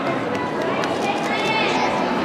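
Crowd chatter: many voices talking at once in a large indoor hall, with a higher-pitched voice standing out briefly near the end.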